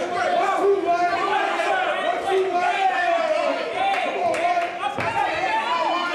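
Overlapping voices of ringside spectators and corner men calling out and chattering during a boxing exchange, with no single voice clear.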